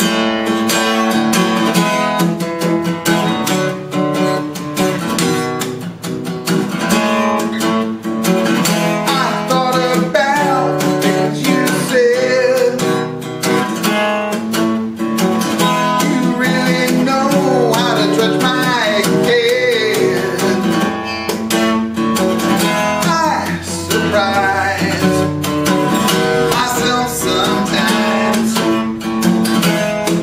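Taylor cutaway acoustic guitar strummed and picked with a flat pick in a song accompaniment. A man's singing voice joins the guitar after about nine seconds.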